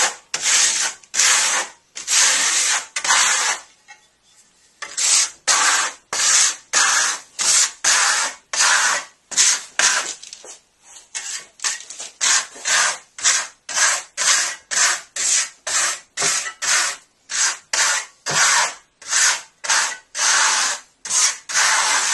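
Trowel scraping sand-filled Marmorino KS lime plaster across a wall in quick, repeated strokes, about two a second, with a brief pause about four seconds in.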